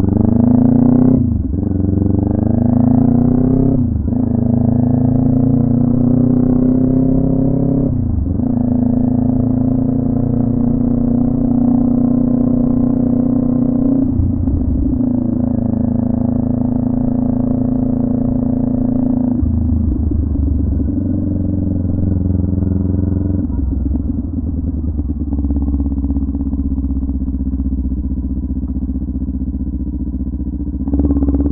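Kawasaki Ninja 400 parallel-twin engine on the move, revs climbing in each gear and dropping sharply at upshifts about one, four, eight and fourteen seconds in. It then runs at a steadier, slightly quieter note through the second half.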